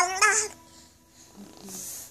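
Baby girl's high-pitched, sing-song vocalizing: a few wavering notes that stop about half a second in.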